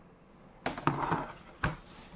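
Handling sounds from a kitchen scale on a desk: three light knocks with a brief rustle between them.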